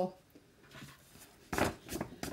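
A single short rustle about a second and a half in, from a paintbrush and a silk-screen chalk transfer being handled over a cutting mat. Otherwise quiet.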